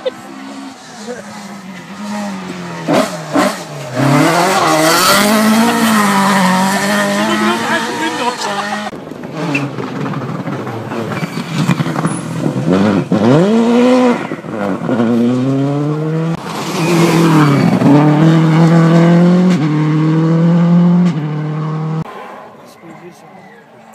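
Rally car engines at full throttle passing close by, revving up and dropping in pitch with each gear change, loud.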